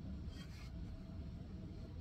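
Steady low room hum with a faint constant tone. About half a second in there is one short, scratchy stroke, likely a paintbrush dragged across canvas.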